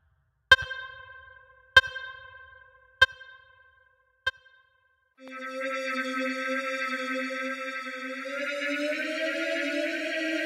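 Krakli S3 software string-machine synthesizer: four short struck notes on the same pitch, about a second and a quarter apart, each fading away. About five seconds in, a sustained bright synth chord starts and holds, sliding up in pitch near the end.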